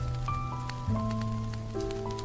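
Smooth jazz piano playing held chords over a bass line that moves to a new note about a second in, with a light patter of rain-like ticks behind the music.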